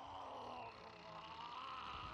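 Faint anime soundtrack: a wavering, pitched cry from a giant character straining with gritted teeth.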